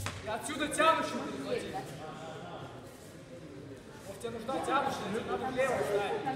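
Indistinct voices of people talking in a large hall, in two spells with a quieter lull in the middle.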